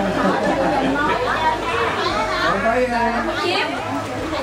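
Several people talking at once: overlapping conversational chatter of a gathered group in a room.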